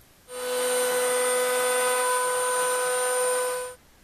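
Table-mounted router with a bearing-guided bit running at a steady speed, a rushing noise with a fixed high whine, while cutting the ledge for the binding along the edge of a banjo neck. It starts abruptly just after the beginning and cuts off abruptly shortly before the end.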